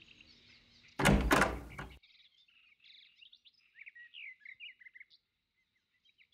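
Birds chirping in quick, short high calls, laid in as morning ambience. About a second in comes a loud, one-second burst of rushing noise before the chirps start.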